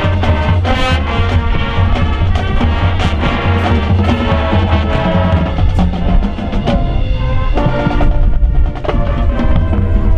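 High school marching band playing its field show: sustained chords over strong low bass notes, with percussion strikes throughout.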